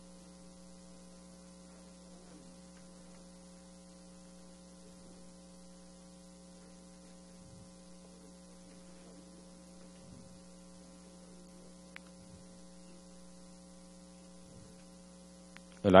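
Steady low electrical hum with faint background room noise. A single word is spoken at the very end.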